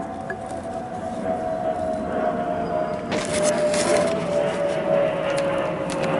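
A steady high hum that drifts slowly lower in pitch, with a short run of clicks and rustling about three seconds in.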